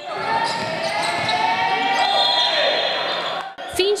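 Live game sound from an indoor basketball match: a basketball being dribbled on the court, with voices of players and spectators echoing through the hall.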